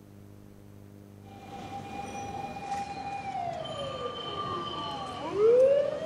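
A siren wailing. About a second in, a held tone begins; it slides down in pitch and then sweeps back up and louder near the end.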